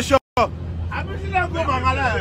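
Group of men's voices chanting and talking inside a bus, over the bus engine's steady low hum. The sound cuts out completely for a moment just after the start.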